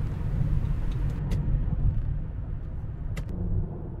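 Car road noise heard from inside the cabin while cruising on an expressway: a steady low rumble of tyres and running gear. Two faint clicks, about a second in and near the end.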